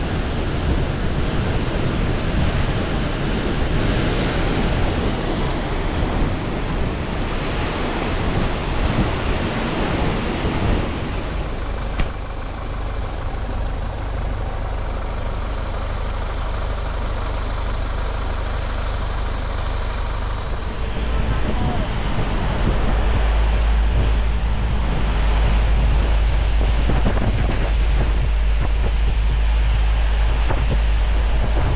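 Loud, even rushing of a muddy waterfall in flood. About 12 s in it cuts to the quieter, steady noise of travelling by road, and from about 21 s a heavy wind rumble buffets the microphone.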